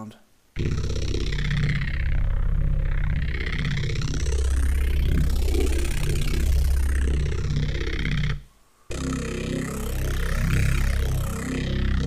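Neuro bass synth patch (two FM8 instances and Native Instruments Massive in an Ableton instrument rack) playing a heavy, growling bass, its tone opening and closing in slow sweeps, run through a saturator on sinoid fold and a chorus at 100% wet that make it full and wide. It plays in two long phrases, the first about eight seconds, then a short break and a second phrase.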